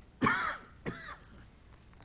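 A person clearing their throat in a sharp half-second burst, then once more, more briefly, just before the one-second mark.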